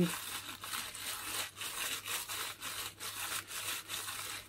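Plastic freezer bag full of sliced porcini mushrooms rustling and crinkling as hands press and flatten it, in irregular scratchy rustles.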